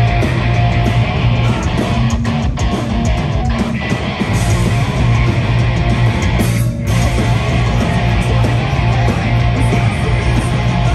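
Punk rock band playing live: loud distorted electric guitars, bass guitar and drums. The bass line drops away for a couple of seconds about two seconds in, and the band breaks off for a moment about two-thirds of the way through before crashing back in.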